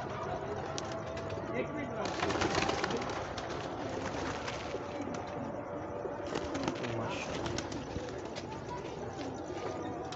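Domestic pigeons cooing, with rustling from the birds being handled that grows louder about two seconds in.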